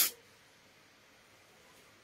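Near silence: room tone, after a brief hiss cuts off right at the start.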